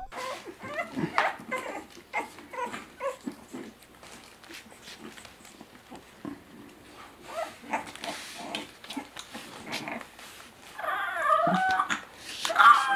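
A very young bulldog puppy vocalizing in a string of short, squeaky yips and whimpers. Near the end it gives a louder, longer howl that wavers up and down in pitch.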